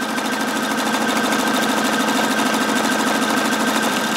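Husqvarna Viking Opal 650 sewing machine running steadily at speed on its start/stop key, sewing the forward satin-stitch column of an automatic buttonhole: a fast, even stitching rhythm.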